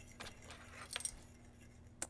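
Faint, light metallic clinks from a metal measuring spoon against a glass mixing bowl, with a short cluster about a second in.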